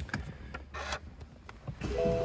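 A few faint clicks from the BMW 420i's cabin controls, then the engine starting near the end, a low rumble rising in level.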